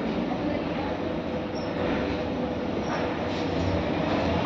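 Steady rumbling, rattling mechanical noise with a faint hum, growing slightly louder toward the end.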